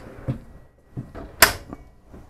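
Slide-out wire-basket pantry pushed shut on its drawer runners: a few light rattles, then a sharp knock as it closes about one and a half seconds in.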